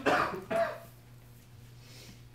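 A person coughing twice in quick succession in the first second, over a steady low hum in a small meeting room.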